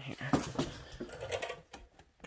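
A man's voice, mostly indistinct, followed near the end by a few light clicks and taps of handling.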